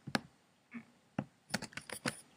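Computer keyboard and mouse clicks: a few single clicks spaced about half a second to a second apart, then a quick run of four or five key presses near the end, as the embed code is pasted into the editor.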